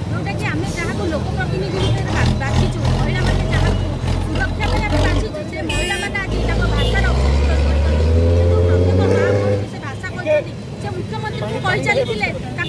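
A motor vehicle engine running under a woman's voice and crowd chatter; from about six seconds in its note rises steadily, as when accelerating, then drops away suddenly just before ten seconds.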